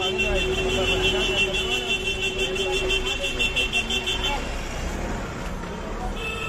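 A steady, rapidly pulsing electronic buzzer tone that stops suddenly about four seconds in, over street traffic rumble and background voices.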